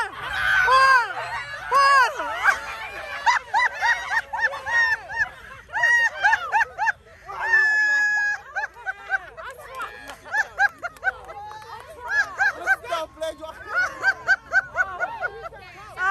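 A group of people shouting, shrieking and laughing excitedly through a tug of war, many voices overlapping in short high calls, with one long high scream about eight seconds in.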